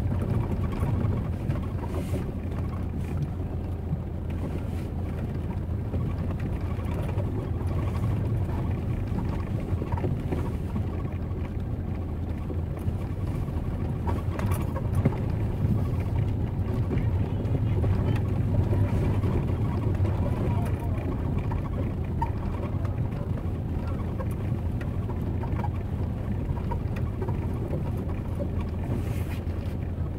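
Busy city street ambience: a steady low rumble of traffic with people talking in the background. A single sharp knock comes about halfway through.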